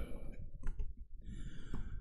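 A man's audible sigh, breathing out between phrases, with a few small clicks.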